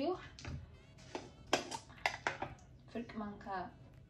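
Background music with a voice, and several sharp clicks and knocks of a jar and containers being handled on a glass tabletop.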